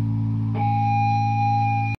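The band's final chord ringing out through the amps as a steady low drone after the drums and vocals stop. About half a second in, a steady high feedback tone joins it, and both cut off abruptly at the very end.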